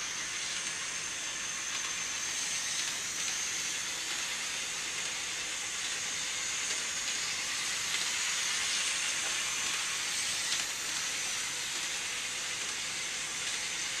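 Hornby OO-gauge 0-4-0 tank locomotive running light at a steady speed around a plastic train-set oval: a steady whirr and hiss of its small electric motor and wheels on the rails, with a thin high whine over it.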